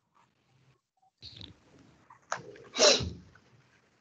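A short, sharp non-speech vocal burst, like a sneeze, about two and a half seconds in over a video-call microphone, after a near-silent pause.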